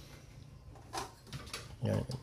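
A brief animal call about a second in, with a short spoken word at the end.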